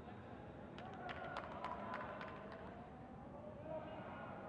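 Faint open-air cricket-ground ambience, with a run of light, sharp clicks between about one and two and a half seconds in.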